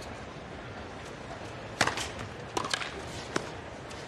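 A tennis ball being bounced on a hard court before a serve: a handful of sharp, short knocks, the loudest about two seconds in. Under them runs the steady hum of a quiet stadium crowd.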